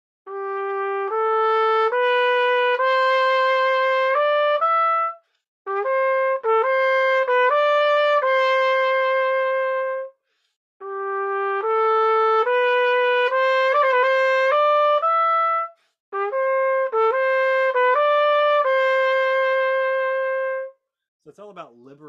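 Solo trumpet playing a slow, lyrical melody in four phrases of about five seconds each, the same two-phrase line played twice, each pair closing on a long held note. It is an intonation demonstration: the player lets the last E speak without 'placing' it, so that it sounds more in tune.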